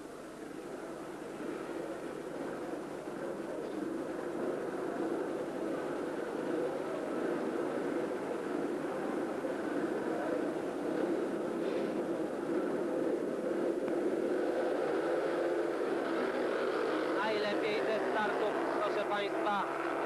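Speedway motorcycles' 500 cc single-cylinder methanol engines revving at the start gate and then racing away, a steady engine drone that grows louder over the first half and then holds.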